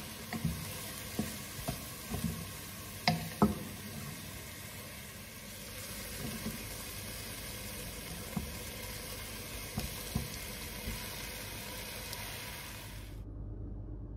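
Chopped onions and garlic sizzling in oil in a pot, with scattered light knocks and taps against the pot. Raw diced beef is tipped in partway through and the sizzling goes on, then it cuts off abruptly near the end.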